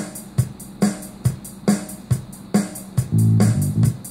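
Multitrack playback of a recorded drum pattern, a hit a little more than twice a second, with a bass line coming in about three seconds in. The bass is out of time with the drums, which the player puts down to his audio interface's recording latency.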